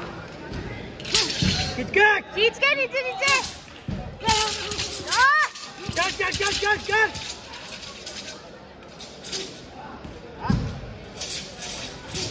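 Several voices giving short, loud shouts in quick succession, one after another and overlapping, with a few sharp slaps or stamps among them.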